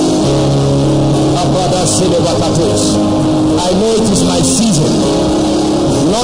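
Background music of slow, sustained keyboard chords that change every second or two, with a voice heard briefly about four seconds in.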